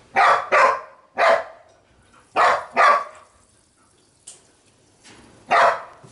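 Six short, loud animal calls, most of them in quick pairs.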